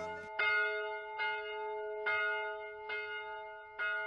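A church bell tolling a death knell, five strokes a little under a second apart, each ringing on with the same set of steady tones.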